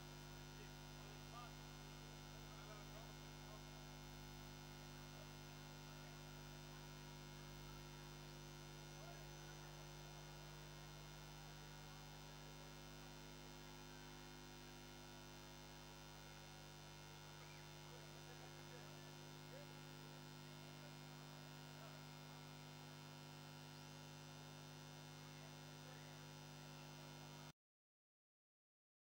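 Faint, steady electrical mains hum made of several fixed tones, with nobody playing. It cuts off abruptly to dead silence near the end.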